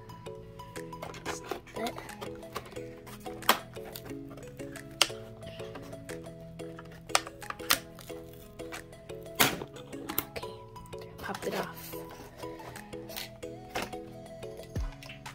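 Background music of steady, stepping notes, with sharp knocks, clacks and rustling of cardboard and hard plastic scattered throughout as an RC remote is worked loose from its zip-tied box.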